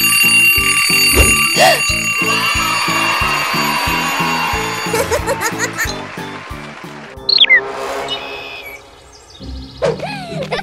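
Cartoon school alarm bell ringing continuously for about five seconds, then cutting off suddenly, over bouncy background music with a steady beat.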